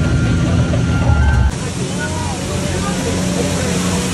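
Low motor rumble under a guide's amplified voice and passengers laughing. About a second and a half in the rumble cuts off abruptly and a steady rush of falling water from a waterfall takes over, with faint voices above it.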